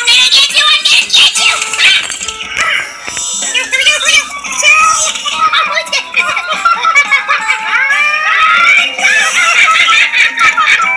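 Children's TV programme soundtrack playing from a television: music with a cartoon-like character voice or singing over it, full of quick gliding pitches.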